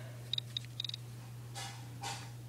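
iPod nano click wheel clicker ticking as the menu is scrolled down one item at a time, about eight quick clicks in two short runs, followed by a soft hiss near the end.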